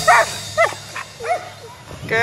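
A dog barking: several short, separate barks in the first second and a half, fading after.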